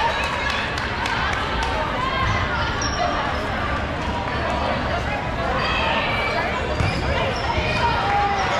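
Dodgeballs bouncing and smacking on a gym floor in an echoing sports hall, with short sharp impacts mostly in the first couple of seconds. Players shout indistinctly in the background.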